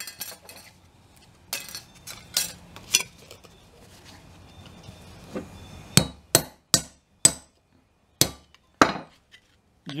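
Hammer striking a steel hand punch held on a plastic plant label over a wooden workbench, punching a hole for the wire stake. A few lighter taps come first, then a run of about six sharp blows from about six seconds in.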